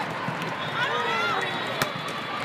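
Volleyball rally: a murmur of voices and calls from players and spectators, with one sharp smack of the ball being hit near the end.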